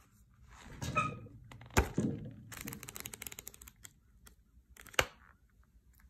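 Handling noise from a spiral-bound sketchbook on a wooden table: two sharp knocks, one about two seconds in and one about five seconds in, with a stretch of rapid clicking and rustling between them.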